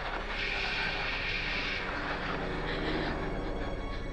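Tense, ominous background music with a steady sustained drone and a brief hissing shimmer in the first two seconds.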